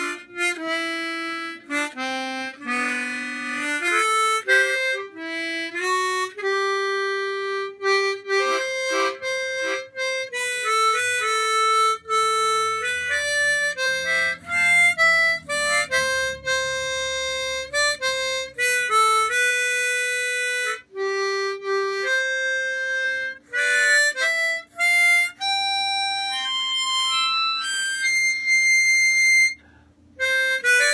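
Harmonica played solo: a melody of mostly single held notes with short breaks between phrases, and a few chords about two to four seconds in.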